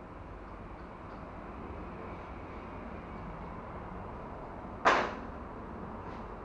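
One sharp knock about five seconds in, dying away quickly, over a steady low background hum.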